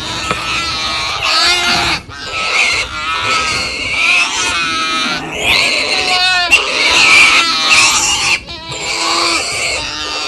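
Animal-like grunting and squealing calls with a wavering pitch, repeating throughout with short breaks.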